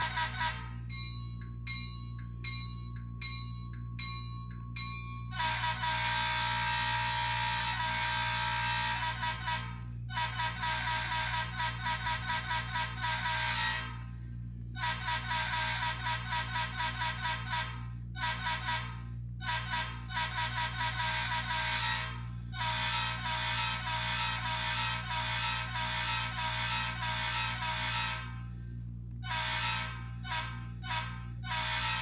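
Model diesel locomotive's sound decoder blowing its horn through a small onboard speaker: long runs of quick toots, about three to four a second, with a longer held blast about six seconds in. A steady low hum sits beneath.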